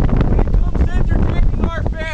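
Wind buffeting the microphone in a loud, constant low rumble, with a man's voice talking over it in short stretches.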